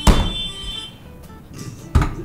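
A sudden electronic sound-effect hit with a high ringing tone that dies away over about half a second, then a sharp knock near the end as a hand slaps a push-button lamp buzzer.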